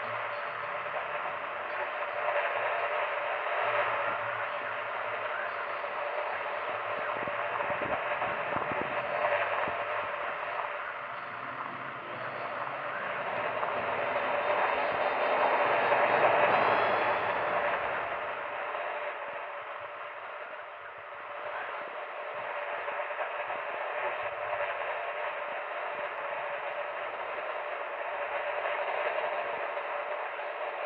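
Old-time radio static from a spooky boiler-room radio loop: a thin, tinny hiss with no clear voice or music, swelling louder about halfway through.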